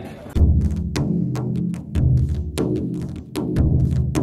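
Marching drum line playing: rapid snare drum strokes over deep, ringing bass drum beats, starting about a third of a second in.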